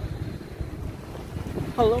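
Wind buffeting a phone's microphone, a low uneven rumble, until a man starts speaking near the end.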